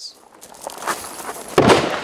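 Footsteps crunching on gravel with rustling and gear noise, then a louder rush of noise near the end.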